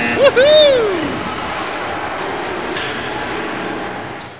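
A shout from a spectator whose pitch rises and then falls, about half a second in, followed by steady background crowd noise in the arena.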